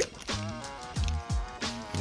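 Background music with a deep bass line and drum hits.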